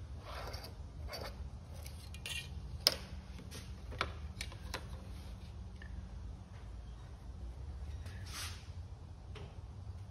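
Pencil scratching along a thin wooden template board and clear plastic ship curves clicking and tapping on a wooden bench as they are shifted, a few scratchy strokes and several short clicks, the sharpest about three seconds in.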